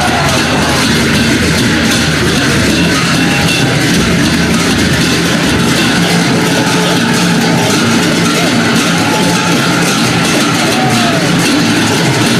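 Assamese dhol drums being beaten in a steady run of strokes amid the noise of a large crowd at an outdoor rally.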